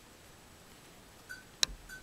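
Faint steady background hiss, then near the end two short high electronic beeps with a sharp click between them: a video camera being handled and its recording stopped.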